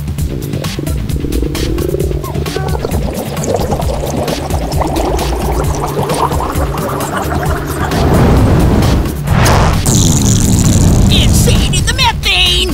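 Cartoon fart sound effects over electronic music with a steady beat: a long straining build-up that rises in pitch, then a loud, sustained blast from about eight seconds in.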